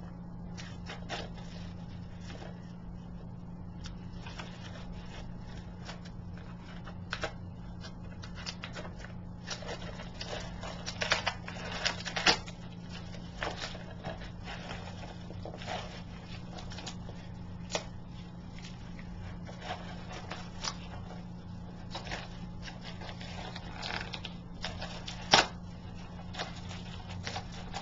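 Hands opening a mailed package: intermittent rustling, crinkling and clicking of the packaging, busiest about halfway through and with a sharp snap near the end, over a steady low hum.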